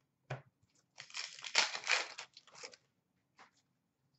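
A foil pack of Upper Deck hockey cards being torn open by hand: a brief tap, then about two seconds of crinkling, ripping wrapper.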